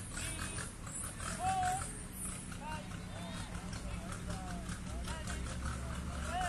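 Open-air background of distant voices and short, rising-and-falling calls over a low steady rumble.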